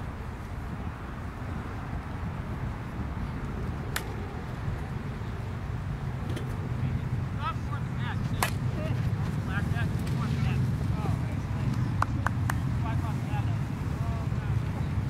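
A plastic wiffle bat strikes a wiffle ball with one sharp crack about eight and a half seconds in, over a steady low rumble; a few lighter clicks follow near the end.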